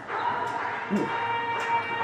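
Shouting and cheering voices in a large sports hall, with a held high-pitched call starting about a quarter second in and running on.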